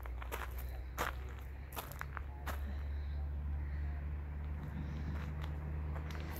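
Footsteps of a person walking: a few uneven steps on rough ground. Underneath runs a steady low rumble that swells through the middle.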